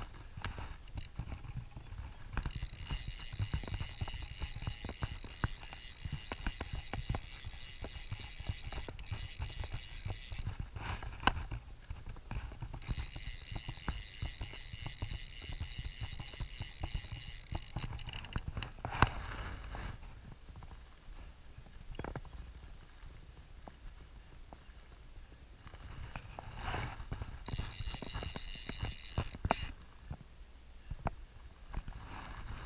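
Click-and-pawl fly reel ratcheting as line runs through it, in three spells: a long one of about eight seconds, another of about five seconds, and a short one near the end.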